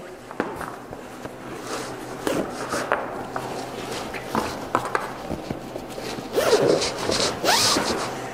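Nylon rifle bag being handled and folded closed: fabric rustling and scraping with scattered light clicks from its straps and zipper pulls, louder and busier near the end.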